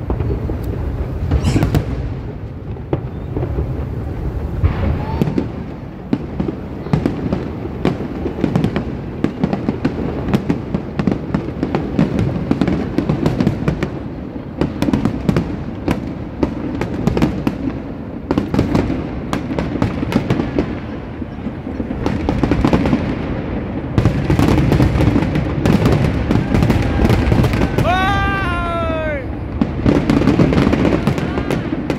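Aerial fireworks bursting: a dense, irregular run of bangs and crackles over a continuous low rumble, louder and busier in the last quarter.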